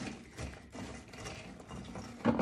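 Pecans stirred with a spatula in a bowl, the egg-white-coated nuts clicking and rattling against each other and the bowl, with a few light scrapes.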